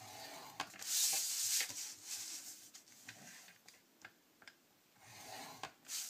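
Stylus drawn along the grooves of a Simply Scored scoring board, scoring a sheet of designer paper. A scratchy rubbing stroke comes about a second in, with fainter rubbing and a few light clicks after it.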